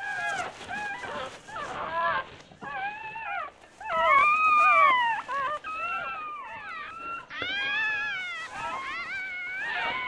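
Young red fox cubs whimpering and squealing: a string of short, high cries that rise and fall in pitch, with a longer, louder cry about four seconds in and another drawn-out one past the seventh second.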